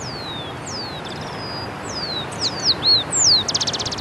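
Small birds singing: a series of short, high whistled notes, each sliding downward, ending in a rapid trill near the end, over a steady background hiss.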